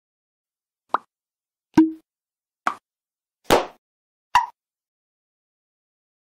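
Five short pop sound effects of an outro animation, a little under a second apart. The second carries a brief low tone, and the fourth is the longest.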